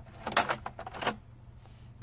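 Plastic clicks and snaps of ink cartridges being unclipped and pulled out of an HP Envy inkjet printer's carriage. There is a quick cluster of clicks about a third of a second in and another click about a second in.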